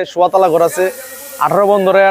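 A man talking, with a brief high hiss about halfway through.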